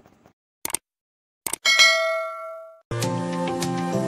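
Subscribe-button animation sound effect: a few quick clicks, then a bright bell-like ding that rings out for about a second. Music starts near the end.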